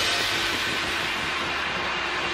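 A steady wash of noise from an electronic dubstep-style track, slowly fading after a hit, with a faint steady low tone coming in just after the start.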